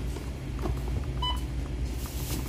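Checkout register's barcode scanner giving a single short beep as an item is scanned, over a steady low hum.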